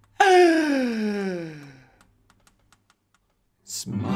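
A man's long wailing cry that slides steadily down in pitch for under two seconds, a comic groan of exasperation. A quick breath and the next sung line with acoustic guitar come in right at the end.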